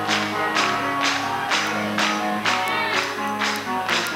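Metal band playing live: electric guitar chords over drums, with a cymbal-and-drum hit about twice a second, without vocals.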